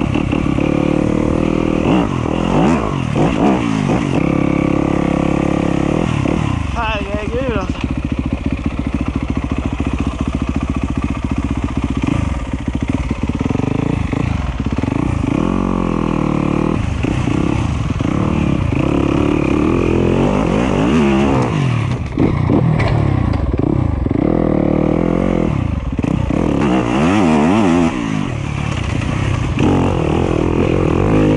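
Yamaha YZ250F dirt bike's four-stroke single-cylinder engine being ridden hard, its pitch repeatedly rising and falling as the throttle is opened and closed and gears change.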